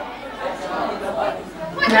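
Faint speech and chatter: a quiet answer from the audience with background murmur in a large room.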